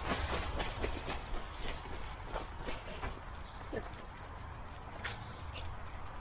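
Dog's paws rustling and crunching through dry fallen leaves as it walks, picked up close by a camera on its head, the crackles densest in the first few seconds and thinning later. A steady low rumble lies underneath.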